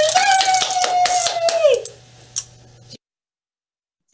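A wind-up toy running with rapid clicking, under a long drawn-out voice that glides down and stops about two seconds in. A few fainter clicks follow, then the sound cuts off abruptly.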